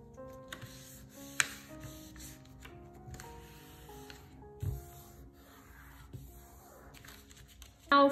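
Soft background music of held notes, over the faint handling of paper being folded and pressed flat by hand. A sharp tap sounds about a second and a half in, and a dull thump near five seconds.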